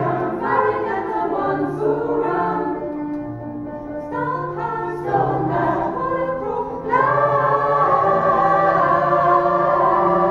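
Mixed-voice pop choir singing a cover of a pop song with piano accompaniment. It grows quieter in the middle, then swells into a loud, held chord about seven seconds in.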